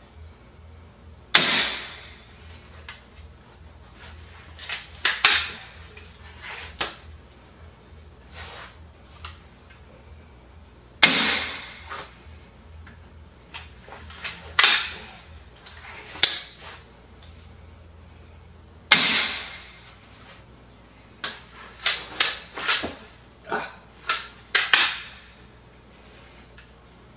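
Autoloading pistol crossbow fired three times, each shot a sharp crack spaced several seconds apart. Between shots come clicks and clacks of the cocking mechanism being worked to recock and feed the next bolt from the magazine, with a quick run of clicks near the end.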